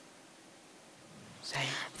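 Near silence with faint room tone for about a second and a half, then a person begins speaking near the end.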